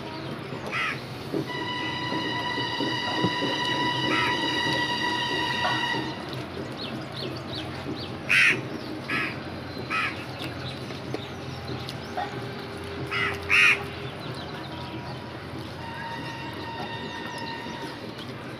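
Crows cawing several times, the loudest calls about eight and a half and thirteen and a half seconds in. A steady high-pitched tone with overtones sounds from about a second and a half to six seconds in and comes back near the end.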